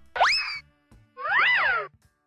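Two cartoon sound effects: a quick upward pitch glide, then a springy tone that rises and falls again.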